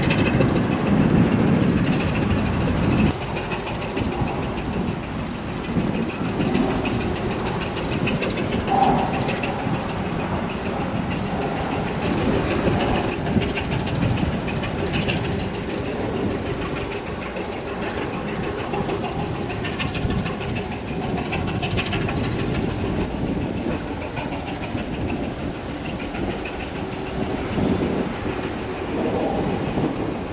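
Coastal cargo ship under way, its diesel engine a steady low rumble under a continuous hiss of wind and water.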